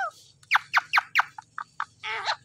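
Indian ringneck parakeet giving a quick run of about five sharp chirps, each sliding steeply down in pitch. Three shorter, softer chirps follow.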